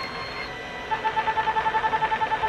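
Ulthera ultrasound machine beeping as the transducer fires a line of treatment pulses: a faint steady tone, then from about a second in a rapid run of short, even beeps, about nine a second.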